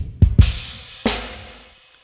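Programmed hip-hop drum pattern playing back from an Akai MPC Renaissance, its kick drum layered from a low-end kick and an added punchier kick. Kick hits land at the start and twice in the next half second, then a brighter snare-like hit about a second in rings out and fades before playback stops near the end.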